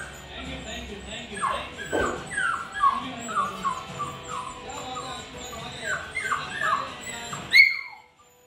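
A puppy whining over and over, short high whimpers that fall in pitch, several a second, while it is eager for a treat on the floor below that it hesitates to jump down to. The whining ends with one loud, sharp cry near the end.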